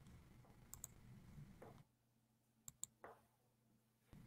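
Near silence broken by a few faint, sharp clicks in two quick pairs, one near the start and one about three seconds in.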